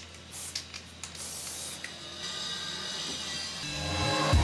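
Aerosol spray paint can hissing in two short bursts onto a canvas in the first couple of seconds, with quiet background music underneath.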